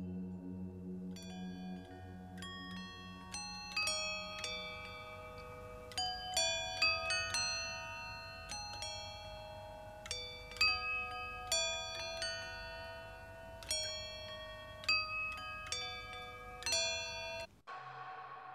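Experimental tuned percussion, metallic pitched notes struck one after another, each ringing on for seconds in the cistern's very long natural reverberation. The notes grow denser and overlap into a shimmering, bell-like texture with several louder strikes, then cut off abruptly just before the end. A low hum dies away at the start.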